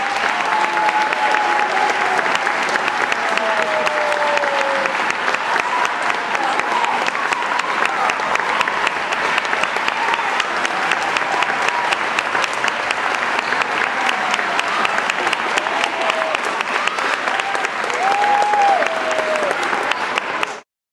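Audience applauding steadily, many hands clapping at once, with a few voices heard over the clapping.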